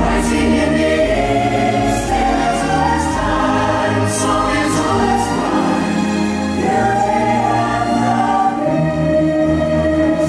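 Show music: a choir singing sustained chords over an orchestral backing.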